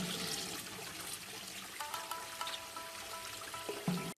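A toilet flushing, water rushing and swirling down the bowl, as an anime sound effect, with soft background music coming in about halfway through.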